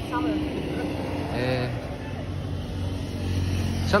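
Low, steady hum of road traffic that grows louder in the second half, with faint voices in the background during the first second or so.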